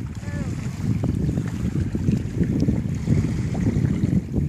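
Wind buffeting the phone's microphone, a steady low rumble, with a brief voice sound about a quarter of a second in.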